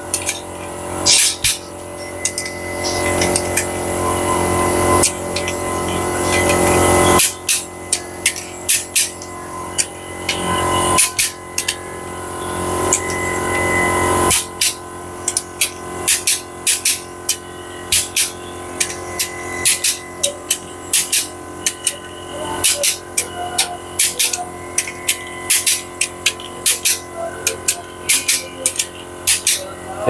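A ratchet wrench clicks in quick repeated runs as bolts are tightened on a bare Mitsubishi L300 diesel engine block. Music plays underneath, louder in the first half.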